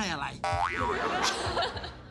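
Edited-in cartoon comedy sound effect: a springy, wobbling tone that rises and falls in pitch several times. It starts suddenly about half a second in and lasts about a second and a half.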